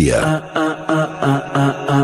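Radio station jingle: a short, quick melody of evenly held notes, a new note about every fifth of a second.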